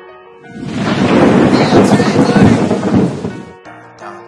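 A loud swell of rushing, rumbling noise that rises about half a second in, holds, then fades away a little before the end, over soft piano music.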